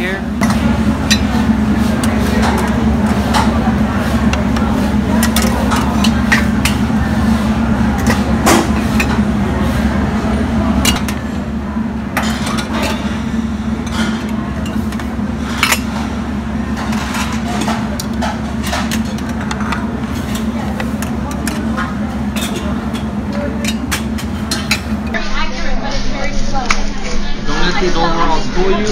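Metal serving tongs and lids clinking against stainless-steel dim sum steamer baskets and a plate, in scattered sharp clicks, over a steady low hum and background chatter. The hum drops away near the end.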